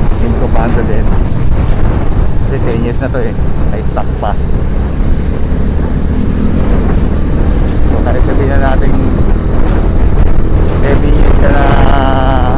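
Steady rush of riding wind on a helmet-mounted action camera's microphone over the running engine of a KYMCO Super 8 125 scooter cruising in traffic. A few short pitched, wavering sounds break through about three, four and eight seconds in and again near the end.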